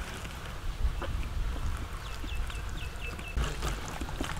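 Wet squishing and smacking of hands kneading thick masala paste into raw rabbit meat. About halfway through, a bird calls a quick run of about six short, falling notes.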